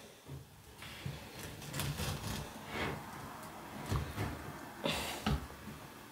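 Spatula cutting and prying into a pan of crunchy set cornflake bars in a glass baking dish: faint crunching and scraping in several short strokes about a second apart.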